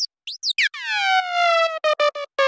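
Electronic dance music breakdown with the beat dropped out. A few short synth chirps sweep quickly in pitch, then a bright synth tone glides down and levels off. Near the end it is chopped into quick stutters.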